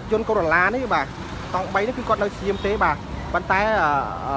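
A person talking in quick, rising and falling phrases, over a faint low rumble of street or engine noise.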